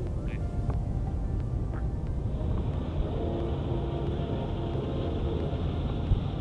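Outdoor shoreline ambience: a steady low rumble, with faint background music tones over it.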